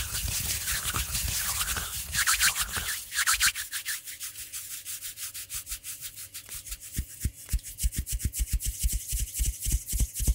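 Bare hands rubbing together right in front of a microphone. For about the first three seconds it is a dense, continuous friction hiss, then it becomes quick, regular back-and-forth strokes, about five a second, each with a soft low thump.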